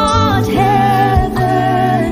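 A religious song: a singer holding long, slightly wavering notes over low bass notes and a beat.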